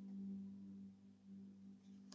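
A faint steady low hum on one unchanging pitch, with faint overtones above it.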